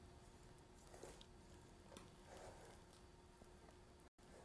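Near silence, with a few faint soft scrapes and light ticks of a spatula smoothing softened ice cream in a metal springform pan.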